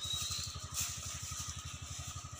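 A small engine running steadily in the background, a faint, even, rapid putter.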